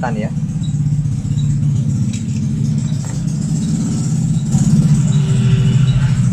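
Hot air rework station's blower running with a steady low hum, growing louder about four and a half seconds in, as it is readied to desolder a small inductor from a phone board.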